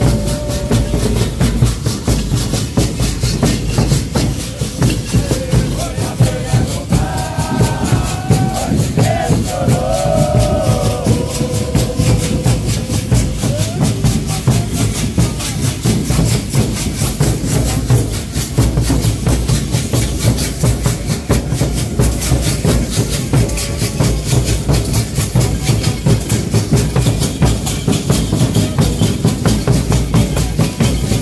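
Moçambique Congado percussion: large hand-carried drums beaten in a steady rhythm under continuous rattling from the group's rattles. Voices sing a short phrase at the start and again a few seconds later, then the percussion carries on alone.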